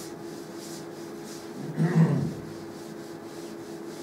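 Cloth wiping a chalkboard: faint rhythmic rubbing strokes over a steady room hum, dying away after the first second and a half. A short, louder sound about two seconds in stands out above the rest.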